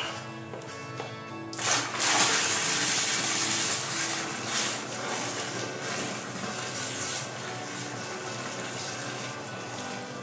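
Cold water pouring into a plastic fermenting bucket of stout wort, starting suddenly about a second and a half in, loudest at first and then settling to a steadier, quieter rush as the bucket fills. Background music plays throughout.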